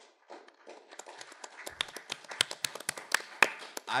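An irregular run of sharp taps and clicks over a light rustle. The taps come thicker towards the middle and stop as speech resumes.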